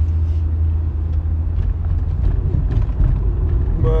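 A steady, loud, low-pitched rumble with a few faint ticks over it.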